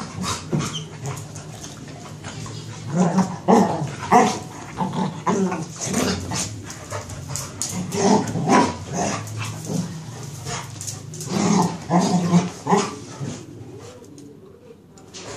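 A beagle and a cocker spaniel play fighting, growling and barking in noisy bursts, the sounds of rough but harmless play. The noise dies down near the end.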